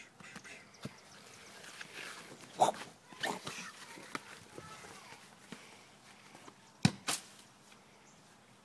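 A soccer ball being kicked on a grass lawn: a few short thuds, the loudest about two and a half seconds in and two more close together near the end.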